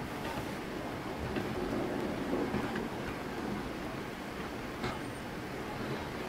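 Steady low background rumble, with a faint click or two and one slightly clearer click near the end.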